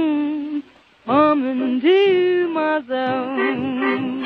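Vintage 1930s-style popular song recording, muffled as if playing from another room. A held, wavering note ends, and after a short break a new melody phrase comes in with sliding, vibrato notes.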